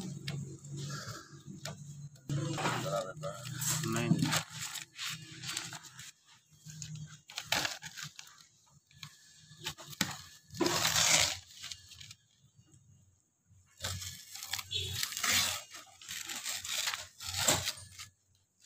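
A thin white protective covering being peeled off a car's front bumper and fender, crinkling and tearing in repeated bursts as it is pulled away and crumpled.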